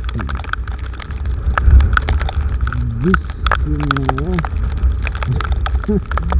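Wind buffeting the microphone of a moving motorcycle in a downpour, a heavy rumble that swells about two seconds in, with raindrops ticking sharply against the camera. A man's voice comes through briefly about three and four seconds in.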